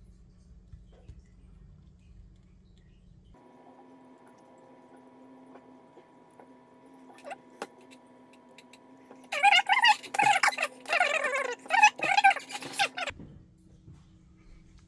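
Faint room rumble, then a sudden switch to a bed of steady sustained tones. Over its last few seconds comes a loud voice-like sound, rising and falling like speech or singing, and the whole thing cuts off abruptly.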